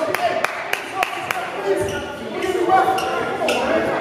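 A basketball dribbled on a hardwood gym floor: sharp, quick bounces about three or four a second, ending about a second and a half in. Players' voices are heard in the echoing gym through the rest.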